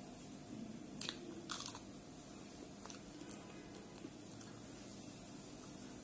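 Close-up mouth sounds of a raw green chilli being bitten: a few sharp crunches about a second in, then chewing with a couple of softer crunches.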